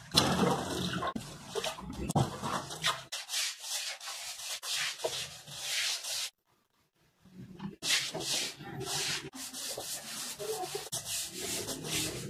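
Long-handled brush scrubbing the wet concrete floor and walls of a drained fish pond: rasping strokes about one to two a second. The scrubbing stops for about a second a little past the middle.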